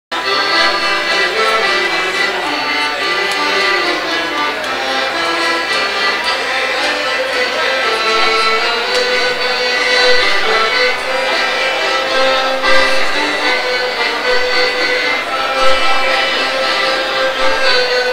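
Solo piano accordion playing a tune, with sustained reed notes and chords under the melody.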